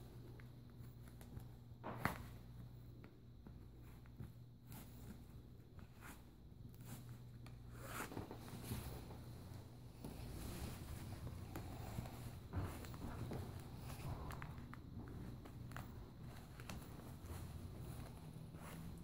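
Faint rustling of satin fabric and ribbon laces being drawn through a corset's eyelets as it is tightened, with a few soft clicks and knocks.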